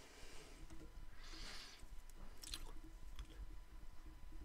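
Faint rustling and a few small clicks from hands working tying thread and a tool at a fly-tying vise, with a brief hiss of thread being drawn about a second and a half in.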